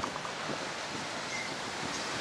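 Steady outdoor background noise, an even wash with no distinct event, of the kind made by wind and distant street traffic.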